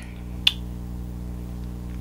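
A single short kiss smack about half a second in, lips wearing matte liquid lipstick pressed to the back of a hand and pulled away, over a steady low electrical hum.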